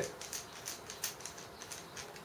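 Faint, irregular light clicks and ticks of small metal plasma-torch parts being handled at the torch head as it is taken apart.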